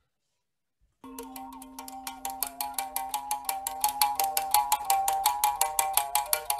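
Ngongo musical bow music starting about a second in: a string struck in a quick, even rhythm of about eight notes a second over a steady low drone, with a shifting melody of overtones above it.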